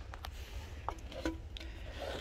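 Faint handling noises: a few light clicks and rubs as a loose car radio head unit is picked up by hand, over a steady low rumble.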